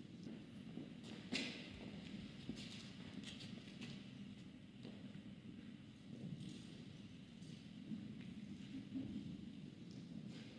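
Faint ambience of a large hall with people shuffling and stepping, under a low steady hum, with scattered clicks and knocks; the sharpest knock comes just over a second in.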